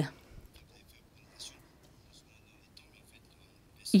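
Near silence: faint room tone over a microphone, with a few faint, brief soft sounds about a second and a half in and again near the end.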